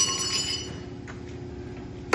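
A single metallic clang, like a tool striking a steel wheelbarrow or mixing tub, that rings out with several bell-like tones and fades within about a second. A steady low hum runs underneath.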